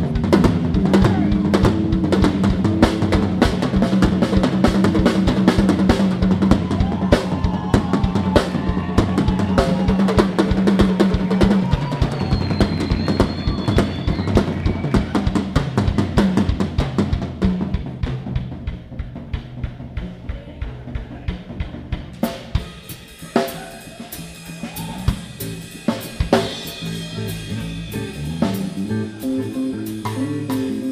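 Live drum kit played with sticks in a fast, busy passage of rolls and fills on drums and cymbals, with sustained bass and guitar notes underneath for the first twelve seconds or so. Later the drumming thins out and gets softer, with sparser single hits.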